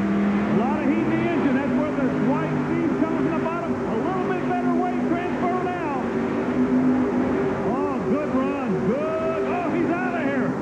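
Multi-engine modified pulling tractor running at full throttle as it drags the weight sled down the track, its engines holding a steady, even tone, with voices over it.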